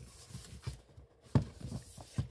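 Cardboard gift box being handled and turned over in the hands, with faint rustling and small taps and one sharper knock of the box a little past halfway.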